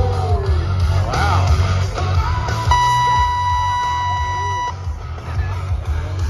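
Rodeo arena loudspeakers playing music with a heavy, steady bass beat, with crowd yells over it. About three seconds in, a steady buzzer tone sounds for about two seconds and cuts off sharply: the arena's ride-time buzzer marking the end of the ride.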